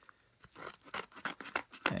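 Scissors snipping through the edge of a padded kraft bubble mailer: a quick series of sharp cutting clicks that begins about half a second in.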